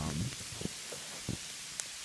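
Sleet falling steadily: an even hiss with a few faint ticks.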